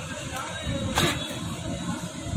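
Indistinct talking, with one sharp click about a second in.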